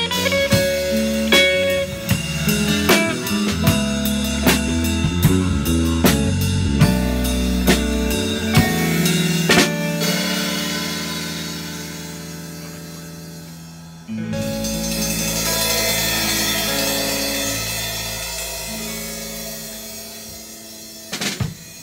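Electric guitar and drum kit playing the close of a song. Drum strikes stop about ten seconds in and a chord is left ringing and fading, then a final loud chord comes in suddenly and rings out, slowly fading.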